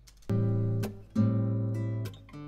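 Recorded acoustic guitar track played back with reverb added through a send effect: two strummed chords a little under a second apart, each ringing on.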